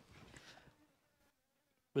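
A fly buzzing faintly for about the first second, then near silence. A man's voice starts right at the end.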